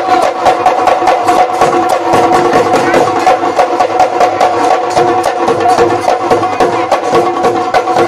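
Assamese Bihu husori music: dhol drums beaten in a fast, dense rhythm under a steady pitched melody line.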